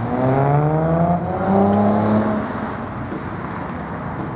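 A motor vehicle's engine accelerating, its pitch rising over the first second and a half, then fading into steady traffic noise.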